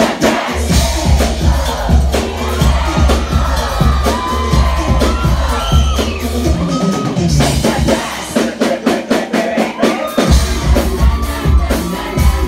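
Live music played loud through a club PA: a heavy pulsing bass beat under a singer's voice and melody lines over a DJ's backing track. The bass drops out for about two seconds past the middle, then comes back in.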